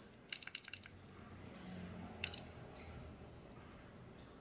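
Short electronic beeps with clicks from a handheld red-light therapy device being switched on and set: a quick cluster of several about a third of a second in, then a single one a little after two seconds.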